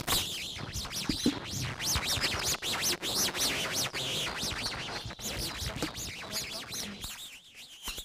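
Small birds chirping repeatedly: many short, high calls, thinning out near the end.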